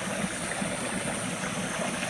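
Steady rushing of a running kitchen tap, with dry ice bubbling and sublimating in water.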